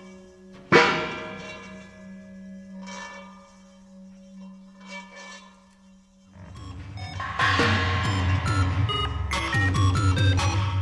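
Metal bowls struck with a mallet ring out with long decays over a steady low drone. One loud stroke comes about a second in, and softer ones follow. From about six seconds in, a louder electronic layer enters, with a heavy low pulsing bass and quick stepping pitched blips.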